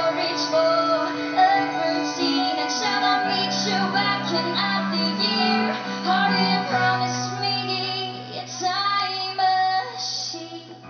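Live song: a woman's voice singing over keyboard and cello, with long held low notes changing every second or two beneath the vocal line.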